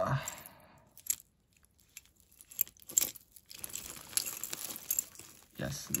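A heap of costume jewelry being rummaged through by hand: metal chains, bangles and beads give scattered clinks about a second in and again around three seconds, then a longer stretch of small clicks and rustling.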